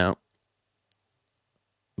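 A man's voice finishing a word, then near silence until speech starts again at the very end.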